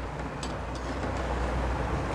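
Rice pakodas sizzling steadily as they deep-fry in hot oil in an aluminium kadai, with a couple of light clicks of the metal slotted spoon against the pan as they are turned.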